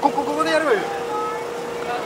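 Speech only: a person talks briefly, then there is a lull, with a steady faint humming tone underneath.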